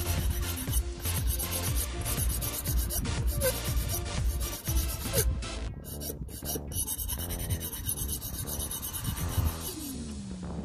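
Repeated rasping strokes of a 300-grit stone on a guided sharpener drawn along the chisel edge of a Gerber Tri-Tip mini cleaver, a little over one stroke a second, raising a burr to finish forming the edge's apex. Background music plays underneath.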